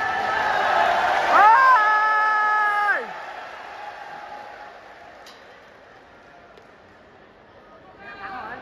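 Arena crowd cheering and shouting, with one person's long, high yell rising about a second and a half in, held for a second and a half, then dropping away. After that the crowd dies down to a quiet murmur.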